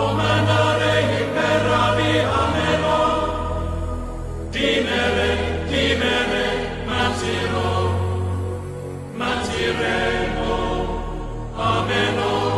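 Soundtrack music: a choir chanting over sustained low bass notes, moving in phrases of a few seconds each.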